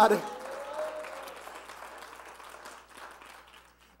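Congregation applauding in response to the preacher, dying away over about three seconds, with one voice calling out faintly in the first second.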